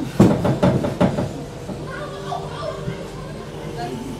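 A few sharp knocks and clatter against a fairground ride car as people climb in, with voices in the background.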